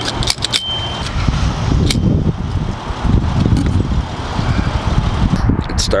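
Gas pump nozzle running fuel into a car's filler neck, with a few metallic clicks of the nozzle and a short high beep in the first second. Wind rumbles on the microphone throughout.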